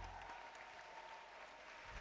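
Faint audience applause, with the last of the dance music dying away at the start.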